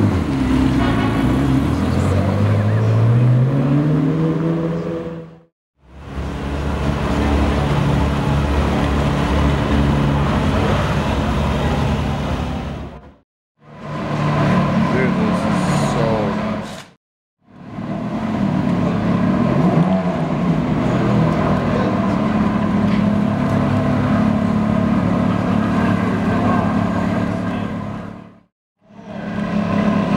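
Ferrari 360 Spider V8 engines. In the first few seconds one revs up as the car pulls away, its pitch climbing steadily. It then runs at low revs in several short stretches, broken by brief silences.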